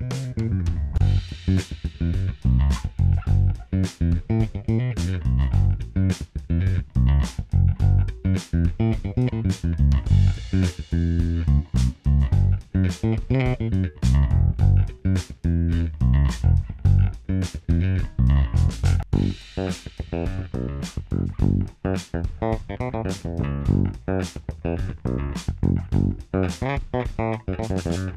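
Harley Benton MV-4MSB short-scale electric bass played fingerstyle in a full mix with drums, a busy bass line with a strong low end, recorded direct through a DI.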